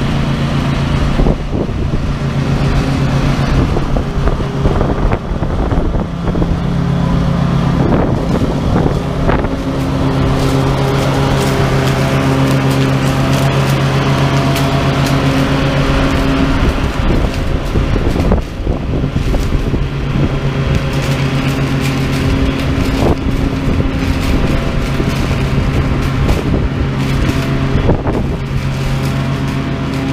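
Exmark 32-inch walk-behind mower engine running under load while mowing dry locust pods, its pitch shifting every few seconds, with scattered crackles.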